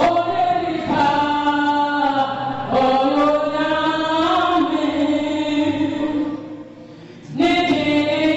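Worship song sung in long, held notes by a woman on a microphone, with the congregation singing along. The singing drops away for about a second near the end, then comes back in.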